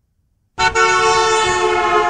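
A car horn sounding one sustained blast, starting abruptly about half a second in and holding a steady pitch. It is a recorded example of a moving car's horn, used to demonstrate the Doppler effect.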